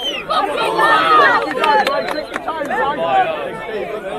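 Crowd of spectators talking and shouting over one another, with a few short sharp knocks near the middle.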